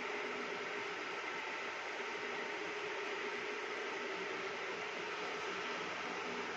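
Steady hissing background noise with a faint hum under it, unchanging throughout.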